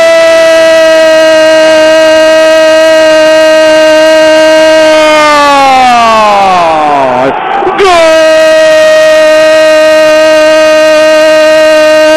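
A radio commentator's long, drawn-out goal cry, held on one high note for about six seconds and sliding down as his breath runs out. It is taken up again on the same note a second later and held to the end.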